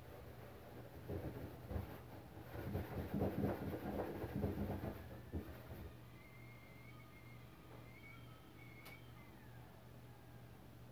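Scrubbing and rubbing at a metal kitchen sink: a few seconds of scratchy strokes and knocks, then quieter, with a faint thin wavering squeak and a single click near the end.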